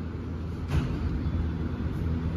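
Steady low rumble of gym background noise, with a single thump about three-quarters of a second in as a person gets down onto the rubber gym floor.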